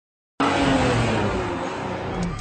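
A car driving past, starting abruptly about half a second in: a dense rushing noise with an engine note that falls gently as the sound fades a little.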